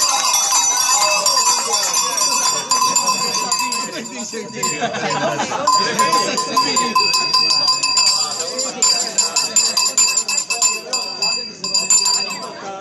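Bells jingling and clanking continuously, with people's voices talking over them.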